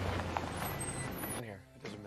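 A steady low hum of a running vehicle engine that cuts off abruptly about one and a half seconds in, followed by a voice.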